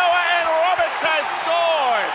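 A man's voice shouting excitedly in long drawn-out calls, its pitch falling away near the end, over stadium crowd noise.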